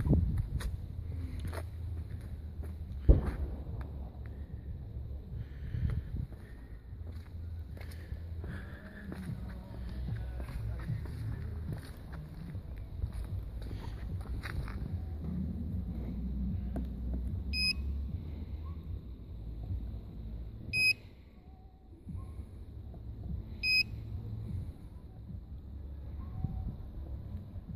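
Three short high electronic beeps about three seconds apart in the second half, from the lightbar's LED flash-pattern controller keypad, over a low steady rumble. A sharp knock about three seconds in is the loudest sound.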